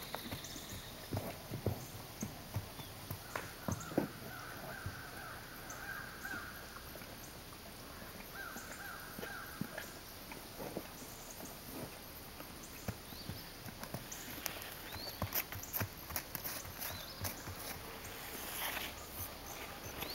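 A horse moving about and feeding: scattered soft knocks and crunches of its hooves on leaf-strewn ground and of eating from a rubber feed pan, more frequent near the end as it walks off.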